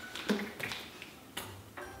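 A few faint, scattered clicks in an otherwise quiet room.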